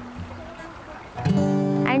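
Acoustic guitar: the end of a ringing F major chord dies away, then about a second in a G major chord is strummed and rings on.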